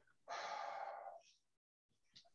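A person breathing out once in a breathy sigh lasting about a second, picked up by a meeting microphone.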